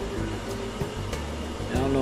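A man's voice, briefly, over a steady low background hum.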